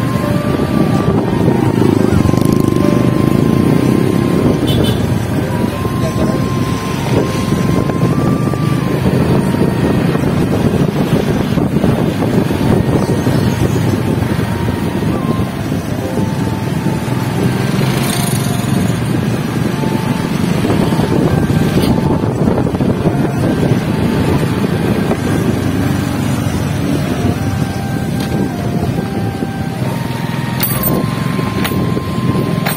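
Motorcycle engines running in moving road traffic, with steady wind rumble on the phone's microphone from riding along.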